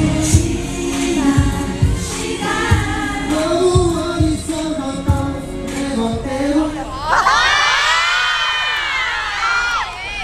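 Live military band music ending a song, with a wavering vocal line and drum hits. From about seven seconds in, many fans scream and cheer in high voices.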